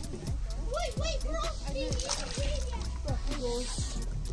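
Chub let go into river water with a splash, water sloshing at the bank's edge.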